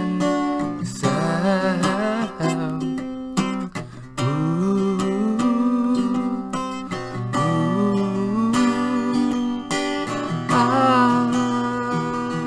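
Acoustic guitar with a capo, played as song accompaniment, with a man's wordless singing gliding between held notes over it.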